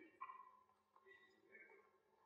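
Near silence in a hall, with faint, brief snatches of distant speech.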